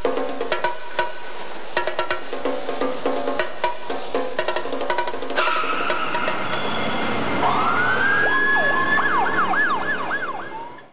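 Police car siren on old videotape sound. A steady tone comes in about halfway through, then a rising wail a couple of seconds later that turns into a fast up-and-down yelp near the end. Before the siren, a hissy clatter of sharp clicks.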